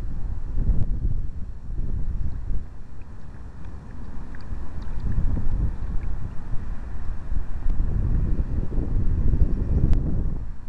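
Wind buffeting the microphone of a camera on a kayak, an uneven low rumble that rises and falls in gusts, with a few faint ticks.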